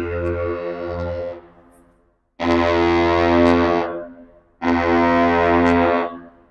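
The Paul R. Tregurtha's deep ship's horn sounding a salute: a long blast ending about a second in, then two shorter blasts of about a second and a half each.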